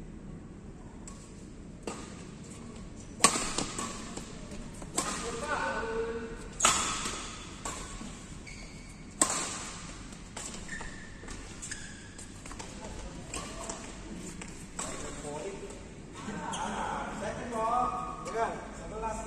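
Badminton rackets hitting a shuttlecock in a doubles rally: sharp cracks every second or two, the loudest about three seconds in, each ringing briefly in the hall. Players' voices come in near the end as the rally stops.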